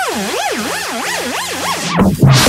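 Electronic dance music (a bounce track) in a build-up: a synth swoops up and down in pitch like a siren, the swoops coming faster and faster, over held low notes and with no drums.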